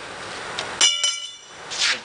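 A small metal bell struck once about a second in, ringing with several high overtones that fade within about a second. A brief hiss follows near the end.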